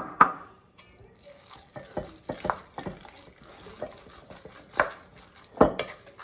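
A metal spoon stirring a thick ham salad in a stainless steel mixing bowl. It scrapes through the mixture, with irregular clinks of the spoon against the bowl.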